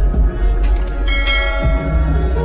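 Slowed, reverb-heavy lofi music with a deep, steady bass. About a second in, a bright bell-like chime rings out over it and fades within about half a second.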